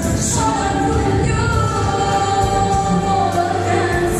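A woman singing into a handheld microphone over musical accompaniment, amplified through a sound system, holding long sustained notes.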